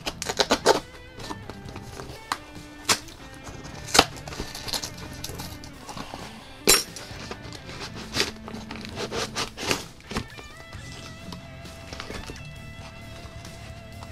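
A Priority Mail envelope and the paper package inside it being ripped and crumpled open by hand: several sharp rips and crackles, the loudest near the start and at about four and seven seconds. Quiet background music runs underneath.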